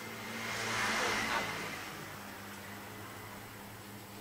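Whiteboard eraser wiping across the board in a soft swish that swells and fades over the first second and a half, over a constant low electrical hum.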